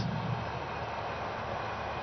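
Steady, even background noise of cricket-ground ambience picked up by the broadcast's field microphones, with no distinct events.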